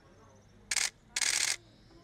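Two short, sharp bursts of hiss, the second about twice as long as the first, over faint voices.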